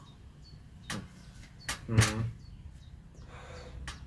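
Beer being sipped and swallowed, from a glass and straight from the bottle. A few short clicks of lips and glass come first, then one short throaty gulp about two seconds in, the loudest sound.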